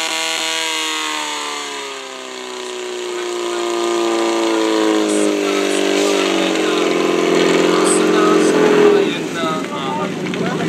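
Engine of a portable fire pump winding down from full revs, its pitch falling steadily over about six seconds and then running lower and steadier. The throttle has been backed off at the end of the attack, once the water jets have hit their targets.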